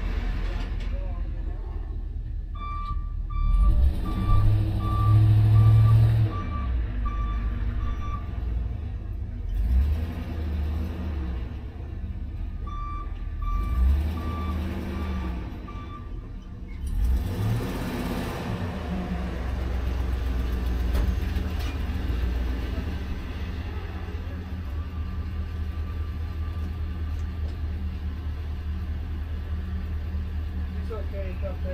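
A vintage Porsche race car's engine idling while the car sits stopped, with a couple of brief revs: one swelling about four to six seconds in, and a short rising rev near eighteen seconds. Two runs of short electronic beeps, about two a second, sound during the first half.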